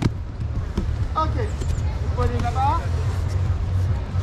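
Voices calling out briefly, about a second in and again around two and a half seconds, over a steady low rumble.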